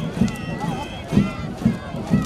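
Marching parade: steady low thumps about twice a second keeping marching time, with voices over them.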